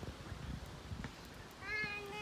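A single short, high, meow-like cry about a second and a half in, its pitch rising and then falling, over a low, faint outdoor rumble.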